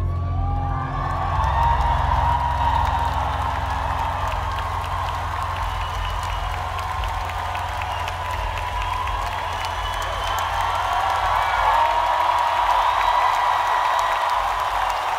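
Large concert crowd cheering, whooping and clapping after a song ends, under a steady low bass tone that holds on from the stage.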